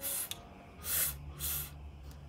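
A woman voicing the phonics sound of the letter F: three short breathy "fff" hisses about half a second apart.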